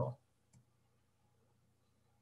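A single faint computer mouse click about half a second in, otherwise near silence.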